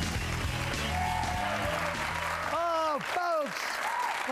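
Rock bumper music with guitar, which ends about two and a half seconds in, over studio audience applause. Two short vocal calls follow near the end.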